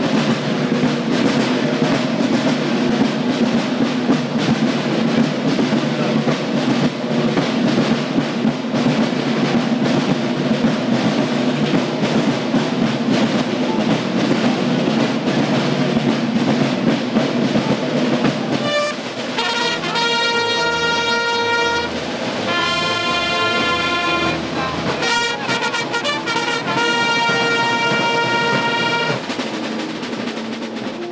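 Marching drums beating a dense, steady cadence. About two-thirds of the way through they give way to trumpets playing long held fanfare notes with short breaks between them.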